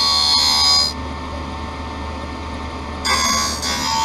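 An optical lens edger's grinding wheel dry-cutting a polycarbonate lens. A loud, high-pitched grinding fills about the first second, drops to a quieter steady machine hum, and returns about three seconds in.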